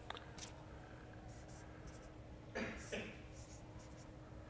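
Writing on a lecture-hall board: a few short scratchy strokes near the start, then a louder pair of strokes at about three seconds in.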